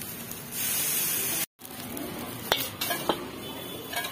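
Noodles frying in a wok: a loud sizzling hiss for about a second as they are stirred. After a cut come three sharp clicks of a metal utensil.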